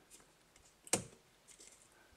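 One sharp click about a second in, dying away quickly, with a few faint ticks around it: the newly installed turn signal/dimmer switch stalk of a Porsche 911 Carrera 3.2 being flicked to switch the headlights to high beam.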